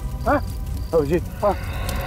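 Men's raised voices in three short, urgent calls with sharply rising and falling pitch, over a steady low background-music drone.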